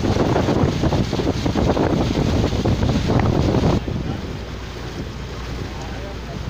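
Wind buffeting the microphone outdoors: a loud, gusty rumble that drops off abruptly about four seconds in, leaving a quieter steady rush.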